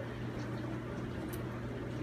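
Steady low hum, with a faint tick a little over a second in.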